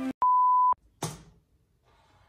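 A single steady, high-pitched electronic beep about half a second long, a censor-bleep-style tone. It is followed about a second in by a short noisy burst that fades quickly.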